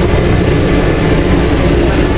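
Passenger ferry's engines droning steadily while under way, a constant low hum under a steady rushing noise.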